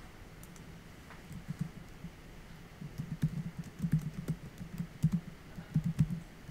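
Typing on a computer keyboard: a run of irregular keystrokes beginning a little over a second in.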